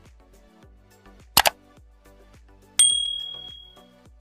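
Subscribe-button animation sound effects over background music with a steady beat: a sharp double click about a third of the way in, then a bright bell ding that rings out and fades over about a second.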